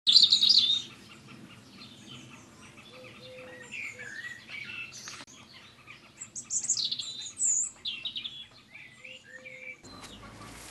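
Songbirds chirping and singing, many short rising and falling calls, with a loud run of chirps in the first second. A single sharp click about halfway through.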